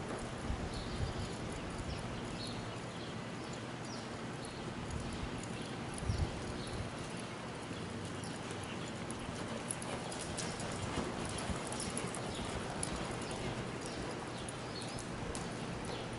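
Hoofbeats of an American Quarter Horse gelding loping on soft arena dirt: dull thuds and scattered clicks over a steady hiss.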